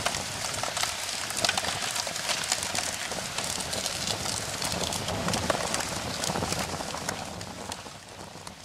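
Fire crackling, a dense irregular run of snaps and pops over a low rushing noise, fading toward the end.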